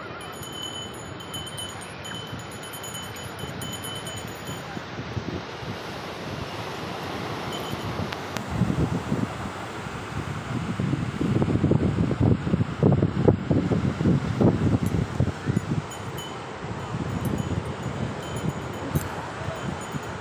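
Steady wash of surf breaking on a beach, with voices of people around. Wind gusts rumble on the microphone, loudest for a few seconds in the middle.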